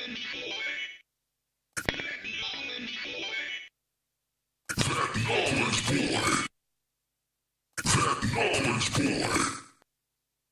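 A short spoken vocal clip processed through iZotope VocalSynth's 'Sweet Gibberish' preset, a synthesized, robotic multi-voice effect, played back in takes of about two seconds with dead silence between: one play ends about a second in, then three more follow. The last two plays sound brighter and a little louder as the module levels are changed.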